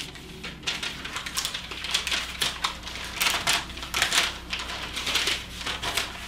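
Thin Bible pages being leafed through to find a passage: a run of quick, irregular paper rustles and crinkles.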